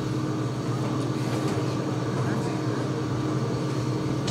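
Excavator's diesel engine running steadily, a constant low hum with an even tone and no changes in speed.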